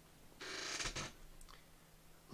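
A chair creaking once for under a second as a seated person shifts position, followed by a faint click.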